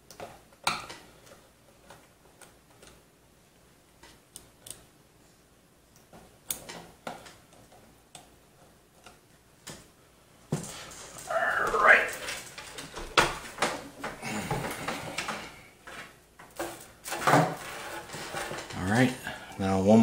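Scattered light clicks and taps of a screwdriver and screws against the steel panel of a PC case. About halfway through, louder handling noise starts, mixed with an indistinct voice.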